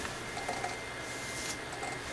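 Thin gold foil origami paper rustling and crinkling faintly as fingers fold and press its creases, with a couple of soft crackles about half a second and a second and a half in.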